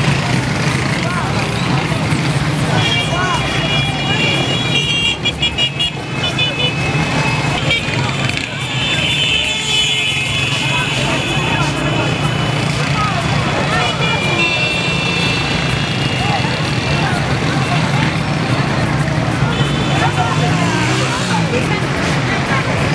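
Busy market street: a babble of many voices over a steady low hum of motorcycle engines, with vehicle horns tooting again and again.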